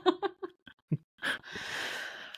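A person's short breathy laughs trailing off a spoken "okay", then a long breathy exhale in the second half.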